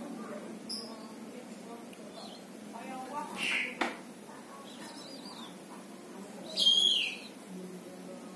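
A caged black-naped monarch (kehicap ranting) giving a few short, sharp calls, the loudest a harsh call falling in pitch about two-thirds through. A single click comes just before the middle.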